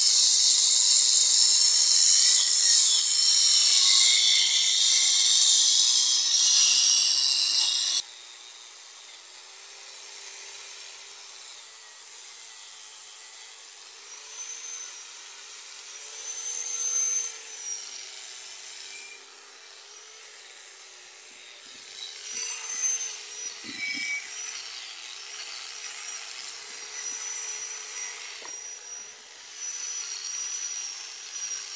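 Corded angle grinder working on the forklift's steel bodywork: a loud, harsh grinding for the first eight seconds that cuts off suddenly, then a quieter motor whine that rises and falls in pitch as the pressure on the tool changes.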